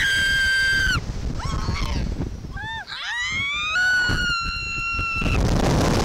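Young women screaming as a Slingshot reverse-bungee ride launches them upward: one long high scream at once, then a rising scream held for about two seconds from about three seconds in. A low rush of wind buffets the microphone underneath.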